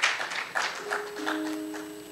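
Congregation applause dying away while a keyboard starts holding sustained notes, two or three tones entering about a second in.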